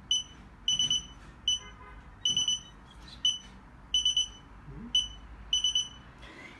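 Fingerprint reader's buzzer beeping as fingerprints are swiped: a short high beep, then a quick double beep, repeated four times in an even rhythm.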